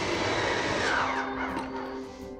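Electric motors of a Lippert Schwintek end-wall slide-out running as the slide retracts. About a second in their whine falls in pitch and fades as the slide comes in against the dresser.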